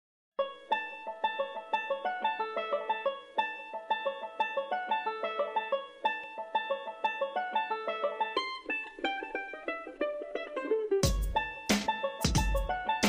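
Background music: a bright plucked-string melody in a repeating pattern, with a heavier beat coming in about a second before the end.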